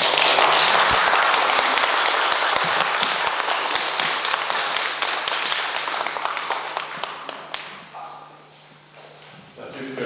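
Audience applauding: many hands clapping, starting suddenly at full strength and gradually dying away over about eight seconds, with a few voices near the end.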